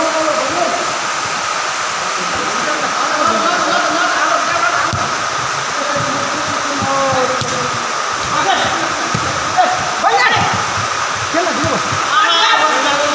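Indistinct shouts and calls of futsal players over a steady noisy hiss of the covered hall, with a couple of sharp knocks of the ball being kicked.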